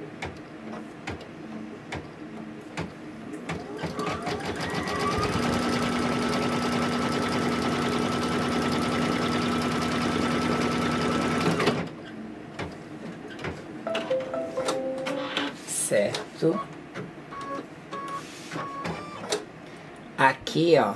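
Brother computerized embroidery machine stitching. After a few seconds of soft ticking it comes up to speed about four to five seconds in, then runs steadily with a rapid needle clatter over a steady motor hum, and stops suddenly about twelve seconds in, with softer clicks after. It is sewing down a newly laid fabric piece in the hoop.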